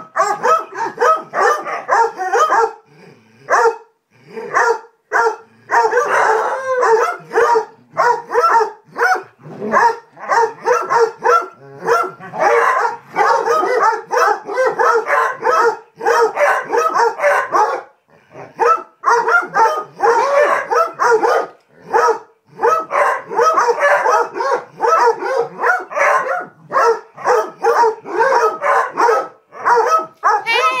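A pack of basset hounds barking over one another in rough play, the barks coming thick and almost without pause, with a few brief lulls.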